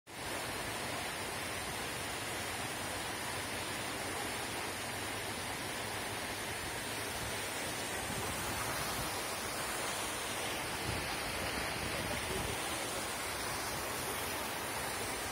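Steady rush of water from a mountain stream and waterfall, an even, unbroken noise.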